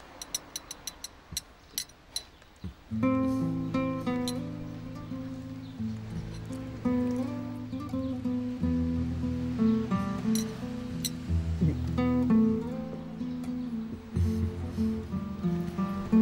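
Background score for a drama scene: a few sharp, sparse taps, then from about three seconds in a low sustained bass with a plucked guitar melody over it.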